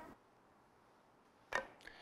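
Near silence in a small room, broken about a second and a half in by a short knock of a carom billiard ball during the lag shot, with a fainter second knock just after.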